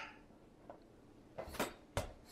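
A quiet room, then a few light knocks and clatters about one and a half seconds in and a sharp click near the end, from a toddler at play on a hardwood floor.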